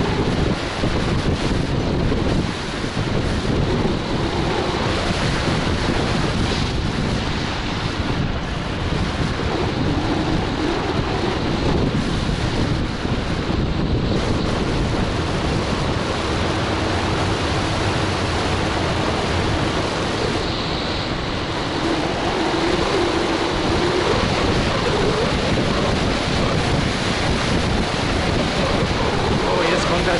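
Steady wind rushing over the microphone while riding an electric scooter at about 45 km/h, with road and tyre noise underneath.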